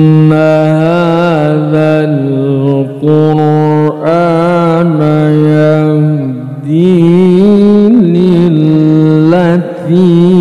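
A man reciting the Quran in the melodic tilawah style, amplified through a microphone. He holds long notes with wavering ornaments, broken by brief pauses.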